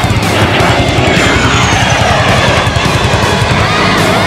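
Music with a steady beat over the sound of an aircraft flying past, its engine pitch falling in about the first second and a half.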